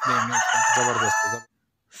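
A rooster crowing: one loud call lasting about a second and a half that cuts off suddenly.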